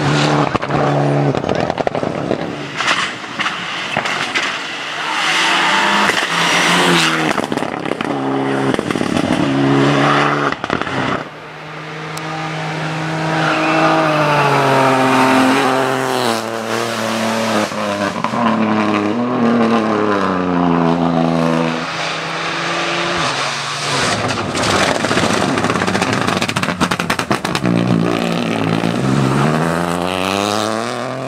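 Rally cars driven flat out past the roadside. Their engines rev high and drop back with each gear change, over and over, with many sharp cracks between the revs.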